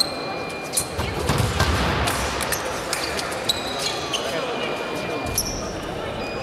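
Sports shoes squeaking and footsteps thudding on a sports-hall floor as fencers walk the piste: a few short high squeaks spread through, with heavier thuds in the first couple of seconds, all echoing in a large hall.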